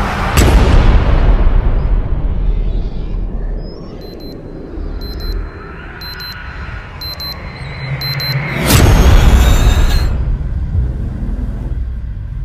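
Cinematic trailer sound design: a deep boom hit about half a second in that fades into a low rumble, then a quieter stretch with a repeating high-pitched electronic beeping, then a second, louder boom about nine seconds in.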